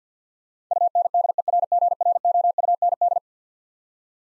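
Morse code at 50 words per minute, the word UNDERGROUND keyed as a rapid run of dots and dashes on one steady pitched tone, starting under a second in and lasting about two and a half seconds.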